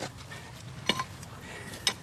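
Three short, sharp clicks about a second apart from hand excavation in a trench: grit and a pottery sherd being worked loose from the soil, over faint outdoor background noise.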